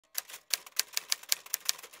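Typewriter keys clacking in a quick run of sharp strikes, about five a second.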